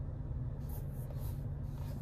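A few brief, faint brushing strokes of a fingertip swiping across a car's infotainment touchscreen, over a steady low hum inside the truck's cabin.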